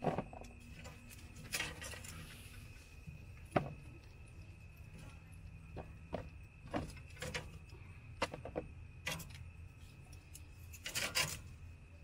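Metal tongs clicking and scraping on a grill grate and knocking against a plastic tub as chicken wings are picked up and dropped in. The clicks and clatters are scattered, with a cluster near the end, over a low steady hum.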